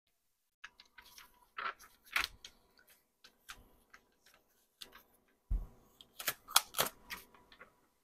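Butcher paper crinkling and rustling as gloved hands unfold it and pull it away from a freshly heat-pressed neoprene coaster, with scattered light clicks and taps. It is sparse at first and busier in the last couple of seconds.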